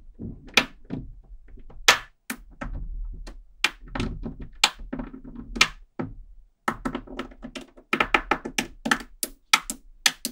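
Small neodymium magnet balls clicking and snapping together as a hand presses them into place and sets a wall of them onto a layered block. Sharp, irregular clicks, coming in a quick run about eight seconds in.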